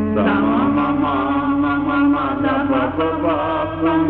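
Hindi devotional bhajan: a voice sings a winding, ornamented line over a steady held drone.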